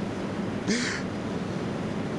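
A man's brief, breathy whimper, as in mock crying, about a second in, over a steady background hiss.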